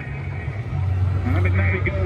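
Cricket match broadcast played through outdoor loudspeakers: a voice speaking over a loud, steady low hum.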